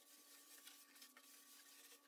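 Faint, scratchy rubbing of hand-sanding on the epoxy hot coat of a carbon-fibre surfboard, over a faint steady hum.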